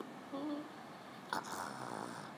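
A short, faint vocal sound from a person, then a click about a second and a half in, followed by a soft hiss.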